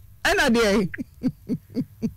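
A person's voice: a short spoken phrase, then a string of short hooting vocal sounds, about four a second.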